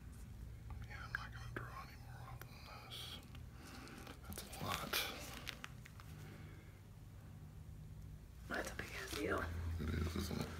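Faint, low speech that the recogniser did not catch, with a few small clicks.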